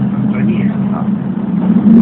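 City bus engine running with a steady low hum, heard from inside the passenger cabin.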